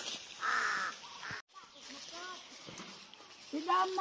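A single short, harsh caw-like call about half a second in, then a faint outdoor background, with a voice speaking near the end.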